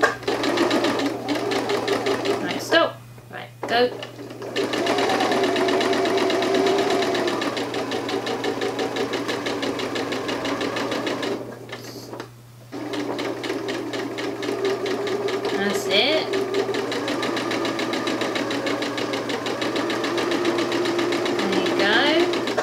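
Janome electric sewing machine stitching fabric at a fast, steady rate. It pauses briefly twice, about three seconds in and again about halfway through.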